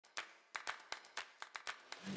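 A run of faint, sharp clicks or taps, about nine in two seconds at an uneven pace.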